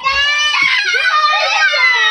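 A young child screaming loudly in one long, high-pitched wail whose pitch bends up and down.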